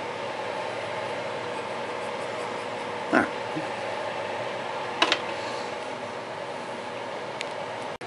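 Steady hum of a running electric fan, with one short sharp click about five seconds in.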